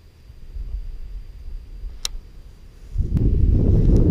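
Wind buffeting the microphone: a low rumble that suddenly turns much louder about three seconds in, with a single sharp click about two seconds in.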